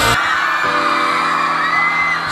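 Live concert music: loud band music cuts off just after the start, then a held synthesizer chord plays while the arena crowd cheers and whoops.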